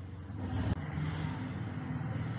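Low engine-like rumble of a motor vehicle in the background, growing louder about half a second in. One sharp click comes shortly after.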